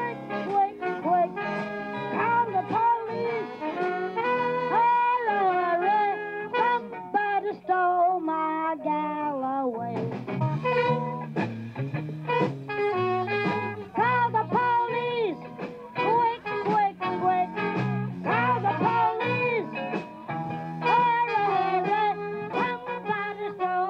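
Live blues band playing: a trumpet carries the melody with a saxophone, over a steady beat.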